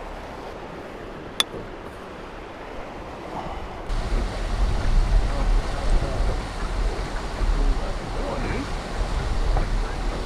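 Rushing river water with wind buffeting the microphone, growing much louder and rumbling from about four seconds in. A single sharp click about a second and a half in.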